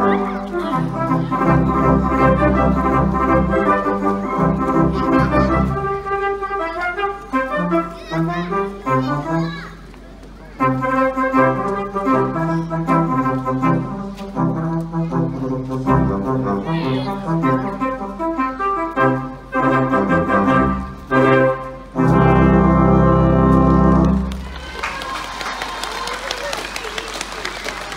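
A Russian horn orchestra playing: straight horns that each sound a single note, joined into one melody by many players. There is a short lull about ten seconds in, a loud held final chord that stops about two seconds before the end, and applause begins right after it.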